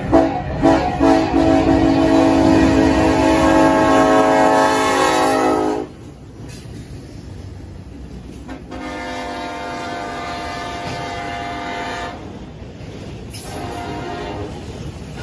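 Diesel freight locomotive's multi-note air horn playing a horn show: a few short toots, then a long blast of about five seconds, and after a pause a second long blast of about three seconds, with another starting near the end. Underneath, the locomotives and freight cars rumble past close by.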